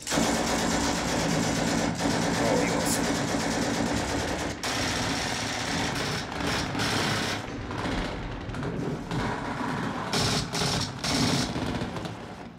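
War-film battle soundtrack: sustained rapid automatic gunfire, steady and dense throughout, with an engine running underneath.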